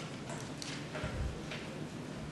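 A few light, sharp clicks and taps and a dull low thump a little after a second in, over quiet room tone.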